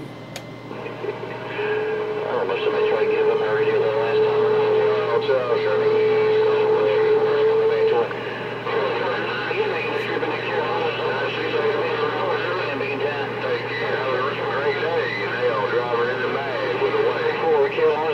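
Galaxy CB radio receiving an incoming voice transmission through its speaker, the speech garbled and noisy, not clear enough to make out. A steady whistling tone sits over the signal from about a second and a half in until about 8 seconds, and a low hum runs underneath.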